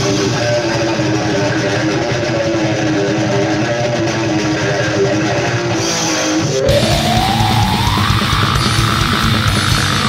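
Heavy metal band recording with a distorted electric guitar riff over drums. About two-thirds of the way through, the band grows denser and louder, and a long glide rises in pitch.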